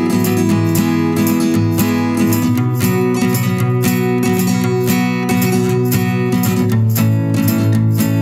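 Background music: acoustic guitar strummed in a steady rhythm over held chords.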